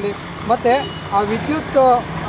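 A voice speaking in Kannada over steady street traffic noise, with a low engine hum running underneath throughout.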